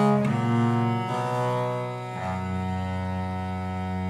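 Two viols da gamba bowed together in a slow duet, stepping through a few notes and then settling, about halfway through, on a long held final chord.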